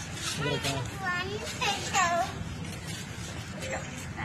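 A small child's high voice calling out in short gliding cries, over adult chatter.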